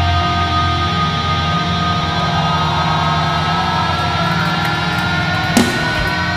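Metal band playing live: held, ringing chords with one tone slowly rising in pitch, and a single drum hit near the end.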